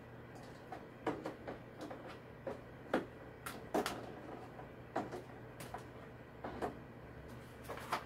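Eggs being set one at a time into a clear plastic egg holder tray: about a dozen light, irregularly spaced clicks and taps of eggshell against plastic.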